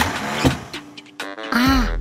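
Cartoon sound effect of a car's exhaust puffing and sputtering, a car that won't start: a short hiss, then a few pops, over background music.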